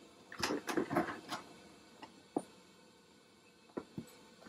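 Clear plastic CPAP helmet hood crinkling and its rigid plastic collar ring and tubing clicking as the helmet is pulled down over a head: a quick cluster of rustles and clicks in the first second and a half, then two single knocks.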